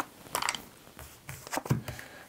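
Playing cards being handled and dealt onto a felt blackjack table: a run of short, light snaps and slaps as cards are gathered up and laid down.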